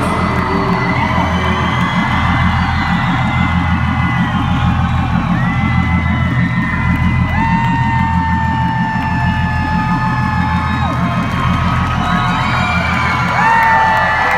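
Concert crowd cheering and whooping over a live band's closing music, which keeps a steady low beat with long held high notes on top.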